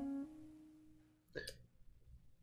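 The final piano note of a live solo piano song rings out and fades away. About a second and a half in comes a short, sharp breathy sound close to the microphone.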